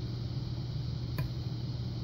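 Hook pick working the pin stack of a pin-tumbler lock cylinder under tension, giving one faint click about a second in, over a steady low hum.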